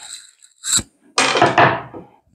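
A wooden board being handled on a wooden workbench: a short sharp click, then a heavy wooden thunk a little over a second in that rings briefly and fades.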